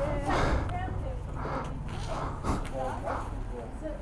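Indistinct, muffled talking over a low steady hum that fades about two and a half seconds in.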